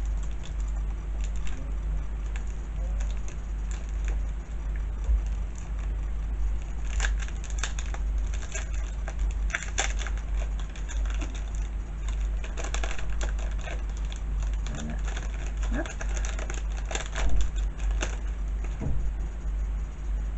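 A small plastic sachet of paper gift tags being opened and the tags handled: irregular crinkling and crackly rustles, thickest through the middle of the stretch, over a steady low hum.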